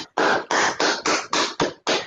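One person clapping their hands, about eight quick claps at about four a second.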